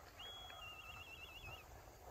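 A faint bird call: a high held whistle that breaks into a quick wavering trill, lasting about a second and a half, over a low outdoor rumble.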